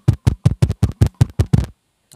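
Fingertip tapping rapidly on a clip-on lavalier microphone, about eight sharp knocks a second, stopping shortly before the end.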